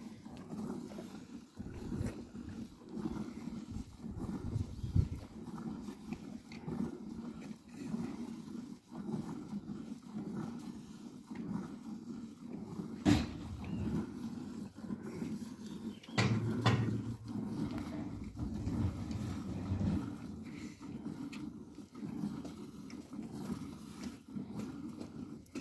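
A cow milked by hand into a plastic bucket: repeated squirts of milk into the pail, over low, continuous cattle sounds in the pen. A sharp knock a little past halfway, and a louder low sound a few seconds later.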